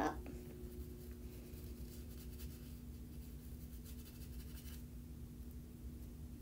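Small paintbrush stroking and dabbing Perfect Pearls pigment powder onto heat-embossed cardstock: faint, soft scratchy brushing over a low steady hum.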